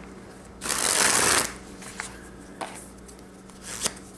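A Theory11 Union deck of playing cards springing from hand to hand: one quick riffling burst of about a second, followed by a few light clicks as the deck is squared.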